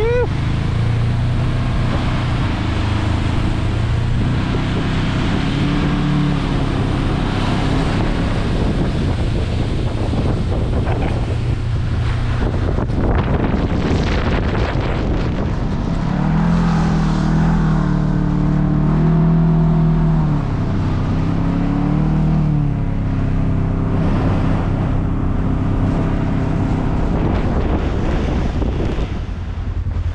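Engine of a Polaris side-by-side UTV towing a snow tube, running steadily and revving up and down, highest from about halfway through. It is heard under heavy wind noise on the microphone.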